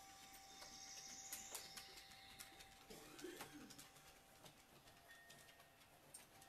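Near silence: faint room tone with a faint, low bird call about halfway through.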